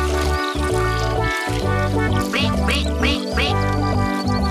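Cartoon duckling quacking four times in quick succession in the second half, over bright children's music with a steady bass beat.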